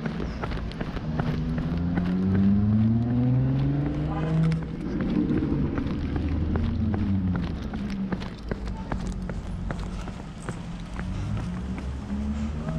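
A car passes on the street: its engine rises in pitch for a few seconds as it comes closer, then falls away after it goes by. Running footsteps and handling knocks go on throughout.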